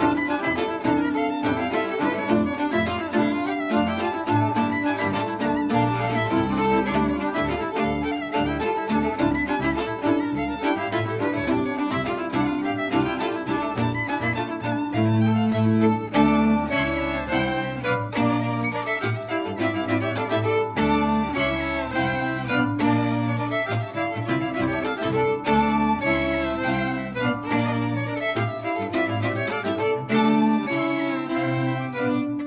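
A folk string band of four violins and a double bass playing an instrumental tune, the violins carrying the melody over the bass. The playing turns more rhythmic, with short repeated bow strokes, about halfway through.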